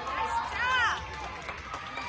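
Spectators' voices in an ice rink arena, with one short rising-and-falling call a little under a second in.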